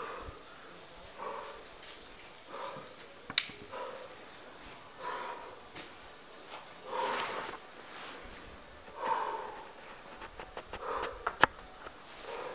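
Rock climber breathing hard while climbing: short, forceful exhales every second or two. Two sharp clicks stand out, one about three seconds in and one near the end.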